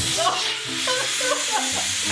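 SodaStream drinks maker hissing as gas is forced into a bottle of liquid, which foams over and sprays out of the bottle in jets.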